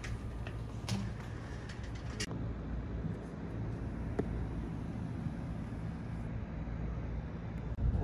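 Steady low outdoor rumble with a faint hum, with a few light clicks in the first couple of seconds.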